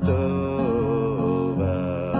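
A man singing a Hebrew liturgical melody in held notes that bend in pitch, accompanied by a strummed acoustic guitar.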